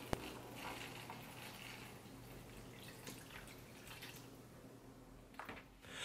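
Water poured from a plastic gallon jug into a plant tray for bottom watering: a faint trickle and splash, with a light click just after the start.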